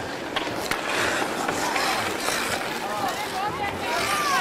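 Ice-skate blades scraping and gliding on rink ice, with two sharp knocks in the first second, over a background of many distant voices.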